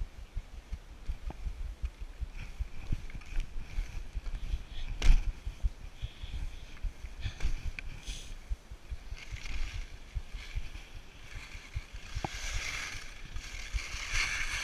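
Skis sliding and scraping over snow, with wind rumbling on a body-worn camera's microphone and scattered knocks as the skier rides over bumps; one loud knock comes about five seconds in. The snow hiss grows louder near the end.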